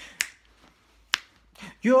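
Two finger snaps about a second apart keep time in a pause of an a cappella song, and a man's singing voice comes back in near the end.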